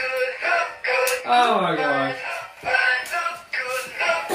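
Battery-powered singing trout toy, an animatronic mounted fish, playing its song through its small speaker: a male singing voice with music, one long falling sung note near the middle.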